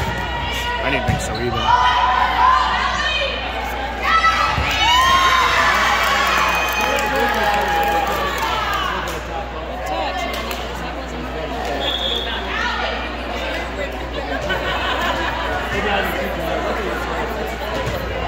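Many high-pitched girls' voices calling and shouting over one another in a large, echoing gym during a volleyball rally, with a couple of ball thumps about one and four seconds in.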